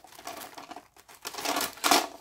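White tissue packing paper rustling and crinkling as it is handled, in irregular bursts that grow louder near the end.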